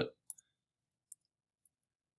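A few short, sparse clicks from operating a computer, the first and loudest shortly after the start, then two fainter ones over near silence.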